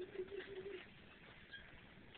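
The faint tail of a long held note in a song, fading out under a second in, followed by a near-quiet pause.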